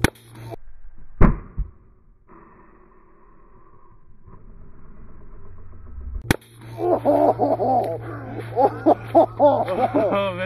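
A single sharp shot from a Havoc paintball launcher running on high-pressure air, firing a Nerf Vortex football at point-blank range, about a second in, with a smaller knock just after. Voices follow in the last few seconds.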